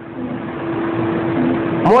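A man's voice holding one steady drawn-out hum between words, over a background hiss.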